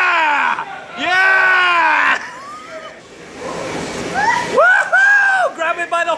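Men's voices whooping and yelling in three long, drawn-out calls, with short choppy bursts like laughter near the end.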